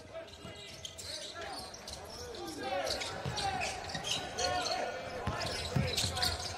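Live basketball court sound: sneakers squeaking on the hardwood floor in short bending squeals, with a few thuds of the ball bouncing.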